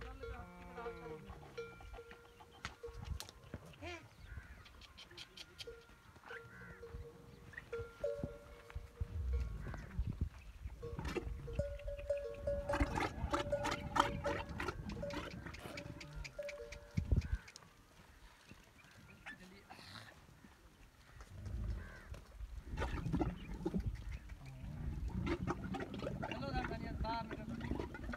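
Background music with a held tone, mixed with low calls from camels, including a bull camel in rut. About halfway through comes a run of fast, sharp clicking.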